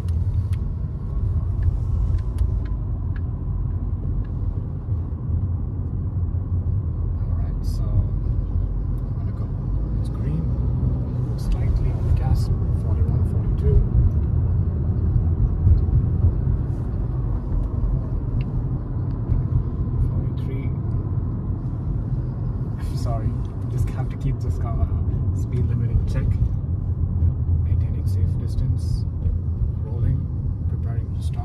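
Steady low road and engine rumble inside a moving Honda car's cabin, with occasional faint clicks.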